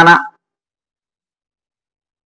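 A man's speaking voice trails off just after the start, followed by dead silence.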